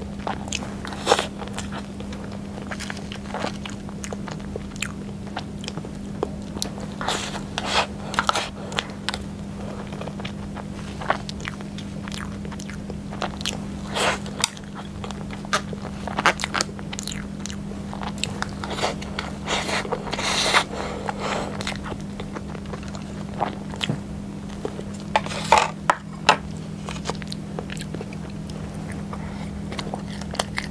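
Close-miked eating of chocolate cream cake: biting and chewing with many small wet mouth clicks, and now and then a utensil scraping a plastic tray. A steady low hum runs underneath.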